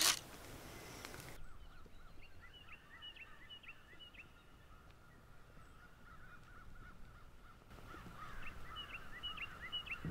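Faint woodland ambience of birds calling, a series of short chirps coming in runs, after a single click at the very start.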